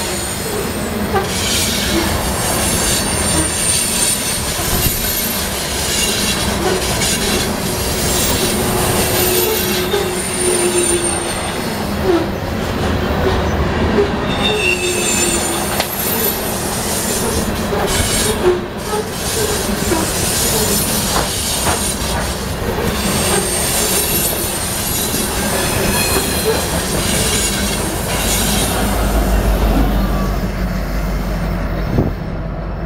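Coal train's steel hopper cars rolling past: a continuous rumble of wheels on rail with repeated clacks over the rail joints and thin, high wheel squeal that comes and goes. The high sounds die away near the end as the last cars pass.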